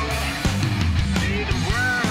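Heavy rock song: distorted electric guitars over bass and a driving drum beat, with a melodic line bending in pitch near the end.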